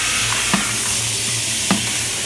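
Play-dough jar capping machine and conveyor running with a steady hiss and low hum. Two sharp knocks about a second apart come as capped jars drop off the end of the conveyor.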